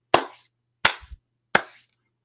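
Three slow hand claps, evenly spaced about 0.7 s apart, each sharp with a short decay.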